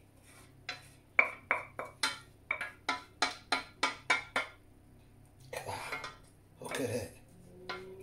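Spoon scraping and knocking against a metal saucepan as the last of the cheese sauce is scraped out: a quick run of a dozen or more sharp knocks over a few seconds, then a couple of rougher scrapes.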